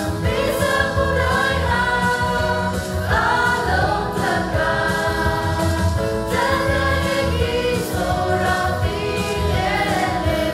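Mixed choir of young men and women singing a hymn together, holding sustained notes that change pitch every second or so.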